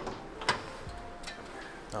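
A sharp metallic click about half a second in as a classic Mini's bonnet catch is released, then a few lighter clicks as the bonnet is lifted.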